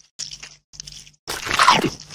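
Crunching bite sound effect, loudest near the end and sliding down in pitch over about half a second, marking a koi's mouth seizing an eel. Before it come two short, fainter stretches of noise over a low hum.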